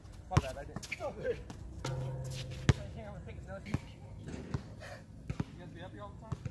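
A basketball bouncing on an outdoor hard court: several separate bounces at uneven intervals, the sharpest about two and a half seconds in, with faint voices beneath.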